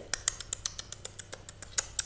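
A quick run of small sharp clicks, about seven a second, as a toy caterpillar is made to eat its way through the oranges in a picture book.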